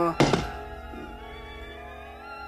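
A single thunk about a quarter second in, as a long tobacco pipe drops onto the floor, followed by a held chord of bowed strings led by violin.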